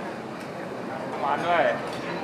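People talking in a room, with one voice clearly heard for about half a second near the middle.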